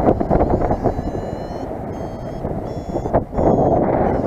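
Airflow rushing over the microphone in flight, with a paragliding variometer sounding a run of short high-pitched beeps, about one every 0.7 s starting around a second in. Beeping like this is the vario's climb tone, signalling rising air.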